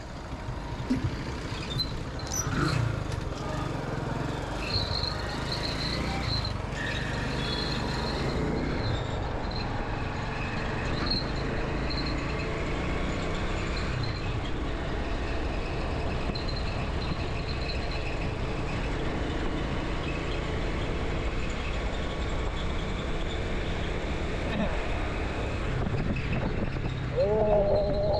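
Motorcycle ride: the bike's small engine running steadily under the rush of road and wind noise, with other traffic passing, including a small garbage tipper truck alongside at the start.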